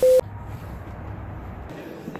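A short, loud steady test-tone beep, used with colour bars as an editing transition, cut off after about a fifth of a second. It is followed by a steady hiss of room ambience.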